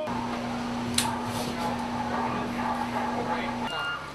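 A steady low electrical hum with one sharp click about a second in; the hum cuts off near the end, where a short high beep sounds.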